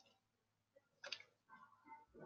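Near silence broken by a single short click about a second in.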